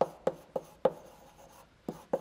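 Chalk writing on a blackboard: four sharp taps of chalk strokes about a third of a second apart in the first second, then one more near the end.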